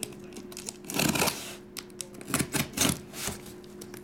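Cardboard case being tipped and handled on a table, giving a few irregular taps and knocks over a faint steady hum.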